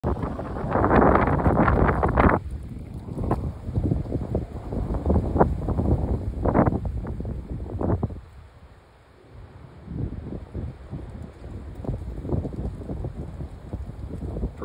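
Wind buffeting the microphone in uneven gusts, loudest in the first two seconds, dropping to a brief lull about eight seconds in, then gusting again more softly.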